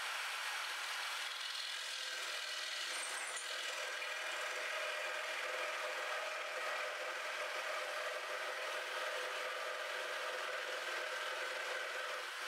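Cordless jigsaw switching on and cutting through a wooden board, its motor and blade running at one steady speed throughout.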